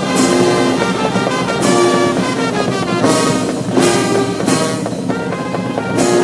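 A brass band playing, in phrases of held notes.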